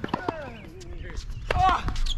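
Tennis rally on an outdoor hard court: a few sharp hits of racket on ball, mixed with short squeaky sliding sounds that fall in pitch. The loudest squeaks come near the end.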